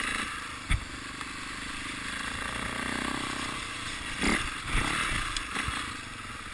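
Enduro motorcycle engine running steadily as the bike rides over rough trail, with a sharp knock under a second in and a burst of knocks and clatter a little after four seconds.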